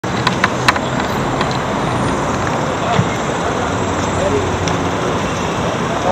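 Steady city street traffic noise with a car passing close by, and a few sharp clicks in the first second.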